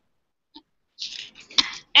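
Silence for about a second, then a short breathy noise from a person with one sharp click, just before speech starts again.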